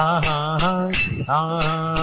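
A man chanting a devotional melody in two sung phrases with a brief break between them. He accompanies himself on small brass hand cymbals (kartals), struck in a steady rhythm about three times a second, their high ringing carrying between strokes.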